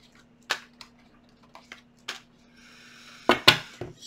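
A deck of tarot cards being shuffled and handled on a table: a series of sharp taps and snaps, a brief sliding rustle about three seconds in, then a few louder clacks near the end.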